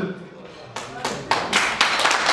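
Audience applause breaking out about three-quarters of a second in: many hands clapping at once, building and carrying on as a dense patter.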